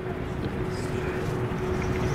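Steady background noise with a thin, steady hum running through it.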